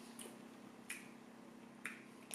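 Three faint, sharp clicks a second or so apart as a small glass bottle and its cap are handled.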